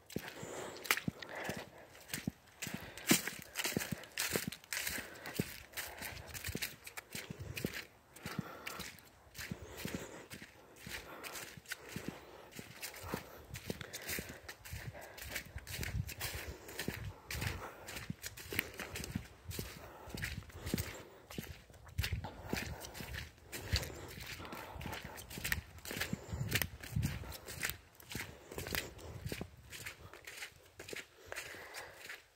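Footsteps walking steadily on a wet, leaf-covered mud track, each step a soft crunch and squelch through the leaves and mud.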